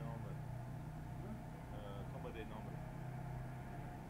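An engine idling steadily with a low hum, with faint indistinct voices about halfway through.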